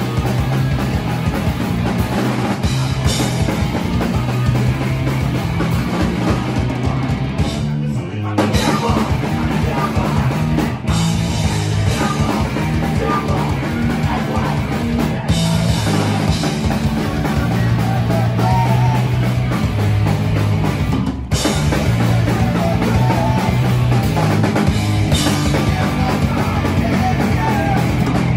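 Punk rock band playing live at full volume: electric guitars, bass guitar and a drum kit, with a singer at the microphone. The music breaks off for a split second several times.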